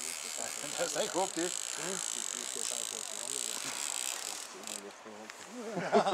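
Fishing reel's drag buzzing steadily as a hooked salmon pulls line off, stopping about four and a half seconds in.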